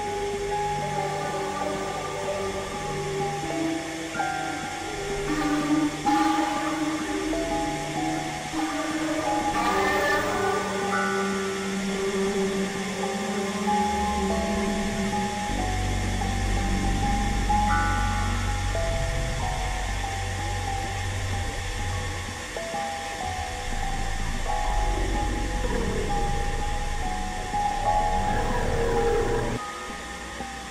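Experimental electronic synthesizer music: held tones step from pitch to pitch over a hissy bed, with noisy sweeps rising and falling. About halfway through, a heavy low drone comes in and stays under the rest.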